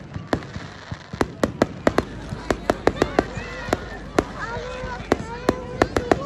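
Fireworks display going off: a rapid, irregular series of sharp bangs and crackles, about three a second.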